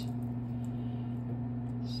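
A steady low hum with a faint hiss underneath, unchanging throughout.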